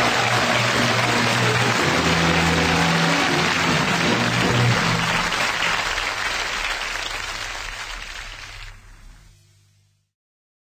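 Studio audience applause over music with low sustained notes that shift every couple of seconds, both fading out over the last couple of seconds.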